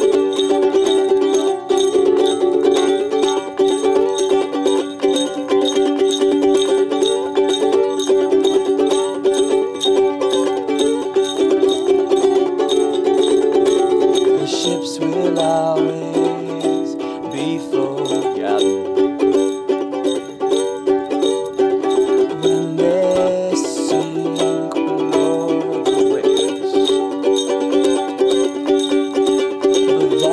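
Instrumental break of an acoustic folk song: a ukulele strummed steadily over a long, held low tone.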